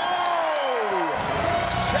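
A man's drawn-out "ohhh" of surprise, sliding down in pitch over about a second; then a low, rumbling music bed starts underneath.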